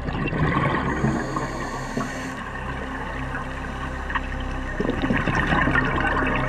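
Bubbling rush of a scuba diver's exhaled breath venting through the regulator, heard underwater in two bursts several seconds apart, over a steady musical drone.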